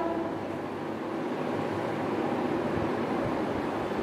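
Steady background noise, an even rushing hiss with no distinct events, in a pause between recited syllables.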